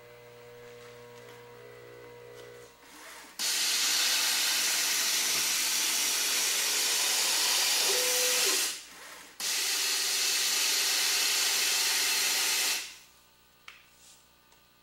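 Loud steady hiss of rushing air in two long stretches, about five and three seconds, with a brief break between, after a low machine hum with a few steady tones at the start.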